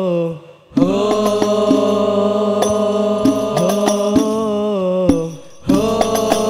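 Al-Banjari sholawat: voices chanting long, sliding held notes over strikes on hand-held terbang frame drums. A held note ends just after the start, and the chant and drum strokes come back in at about a second. They break off briefly near five seconds and start again just before the end.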